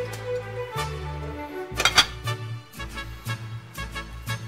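Background music with a steady bass line; about two seconds in, a sharp clink as a glass slow-cooker lid is set down onto the ceramic crock.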